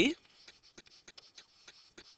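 A stylus writing on a tablet or pen-display surface: light, irregular taps and short scratches, several a second, as letters are handwritten.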